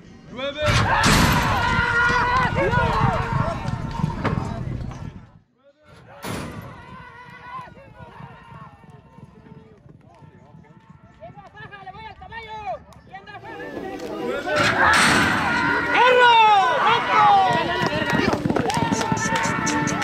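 Spectators shouting and yelling together during a horse race. The shouting is loudest just after the start and again in the last few seconds, with a sudden brief drop-out about five and a half seconds in.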